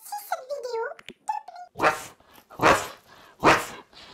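A high voice with sliding pitch for about the first second and a half, then three loud, short dog barks about three-quarters of a second apart.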